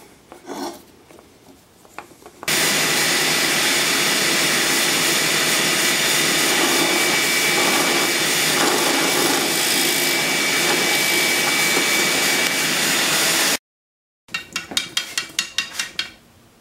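Drill press running steadily as it bores a hole into a carved wooden bird clamped in a vise, then cutting off abruptly. After a short gap, a spring-mounted wooden woodpecker toy clicks rapidly, about six times a second, as it pecks its way down a dowel pole.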